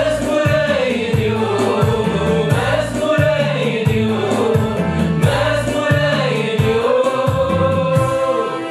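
Tigrinya gospel worship song: a male lead singer with a small choir singing a slow, wavering melody over instrumental accompaniment with a pulsing bass line.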